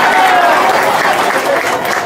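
Crowd applauding, with a voice briefly heard over it near the start.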